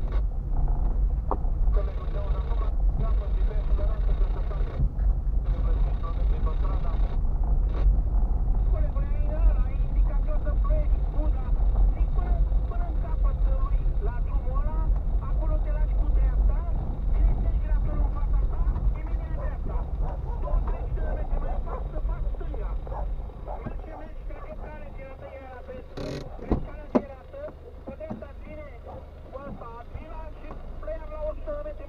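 In-cabin road noise of a car driving slowly over a rough, potholed road: a steady low rumble that dies down as the car slows to a stop in the last few seconds, with a brief sharp knock near the end.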